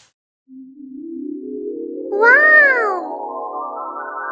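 Edited-in sound effects: a musical tone that climbs steadily in pitch for about two and a half seconds and then holds. About two seconds in, a cat's meow rises and falls over it.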